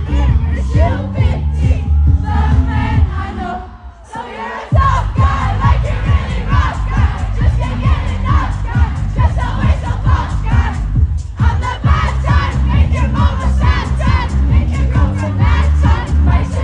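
Live concert sound: a heavy bass beat pounding through the PA under a loud crowd shouting and singing along. About four seconds in, the beat cuts out for roughly a second, then comes back in abruptly.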